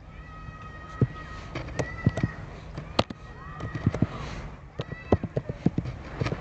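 Keys clicking irregularly on a computer keyboard as a password is typed, with a quick run of keystrokes near the end. Faint, high, drawn-out calls sound behind the clicks in the first half and again around four seconds in.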